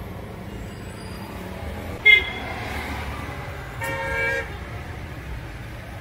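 Car horns honking in busy city traffic: a short toot about two seconds in and a longer honk around four seconds, over a steady traffic rumble.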